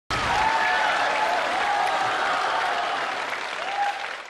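Studio audience applauding, a dense steady clapping that thins out and fades near the end.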